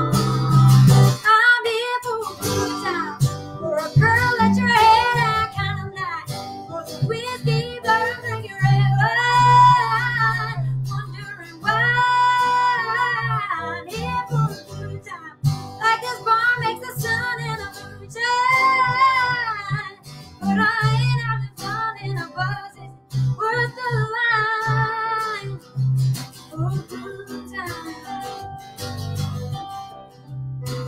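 Live acoustic country-pop performance: a woman singing over strummed acoustic guitar with electric guitar accompaniment.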